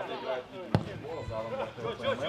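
A football kicked once, hard, about three quarters of a second in, over faint shouts of players on the pitch.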